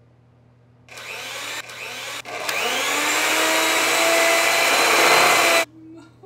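A small electric motor starts about a second in, stutters twice, then runs up with a rising whine and cuts off suddenly near the end.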